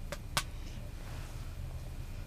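Two short handling clicks close together, then a steady low background hum.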